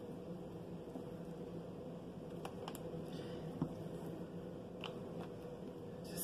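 Thick hot-process soap batter being plopped by hand into a loaf mold for a plop swirl: a few faint soft clicks and squishes over a steady low hum.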